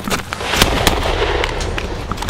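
Semi-automatic pistol fired in a quick string of shots, several in under two seconds.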